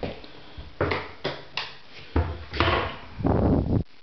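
Bathroom vanity cabinet doors being handled: a run of knocks and thuds with low handling rumble, louder and denser in the second half, then cutting off abruptly shortly before the end.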